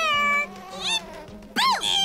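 High-pitched, wordless cartoon cries: one held note, then a short wavering call and a sharp rising-and-falling whoop near the end.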